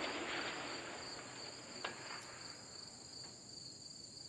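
The echo of a 6mm ARC rifle shot dies away over the first second, over a steady high chirping of insects. A faint sharp ping comes about two seconds in: a distant steel target being hit.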